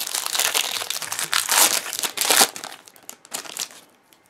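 Foil booster-pack wrapper crinkling as a Pokémon card pack is handled and opened: a dense crackle for about two and a half seconds, then a few scattered rustles that fade near the end.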